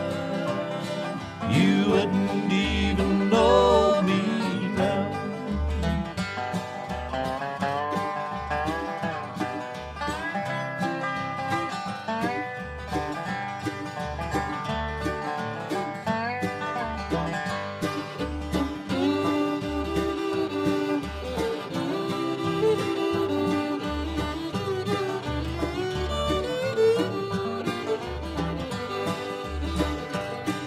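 Bluegrass band playing an instrumental break without singing: banjo and guitar with a sliding, wavering lead line over steady bass notes.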